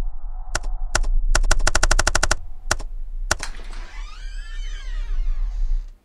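A series of sharp clicks over a steady low hum: a few single clicks, then a rapid run of about ten a second, then two more spaced apart. In the last two seconds a warbling tone rises and then falls, and the sound cuts off suddenly at the end.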